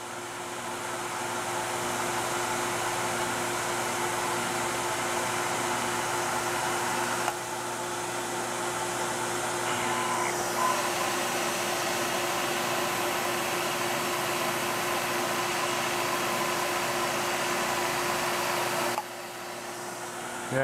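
Milling machine with an end mill cutting a slot into a thin aluminium plate: steady cutting noise over the spindle's constant hum. It builds up over the first two seconds as the cutter engages, dips briefly about seven seconds in, and falls away about a second before the end. The thin, poorly supported plate is deflecting under the cut, which can be heard.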